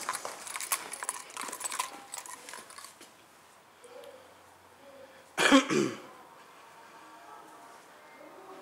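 Footsteps clicking on a hard tiled floor for about three seconds, then a single loud cough about five and a half seconds in.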